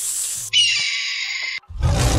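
Drill drum kit 'Extras' one-shot samples auditioned one after another: a high hiss that stops about half a second in, a brighter noisy effect with a few held tones that cuts off after about a second, then a noisy sample with a heavy low end starting near the end.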